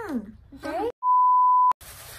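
A censor bleep: one steady, high pure tone lasting under a second, dropped in about halfway through with the sound cut dead around it, covering a word. Before it, muffled gliding vocal sounds from a mouth stuffed with marshmallows.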